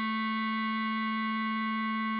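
Bass clarinet holding one long, steady note, a sounding A (written B), a half note played at half speed.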